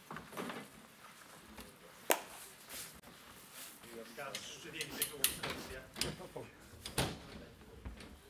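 Indistinct voices of people chatting, broken by a few sharp knocks, the loudest about two seconds in and another about seven seconds in.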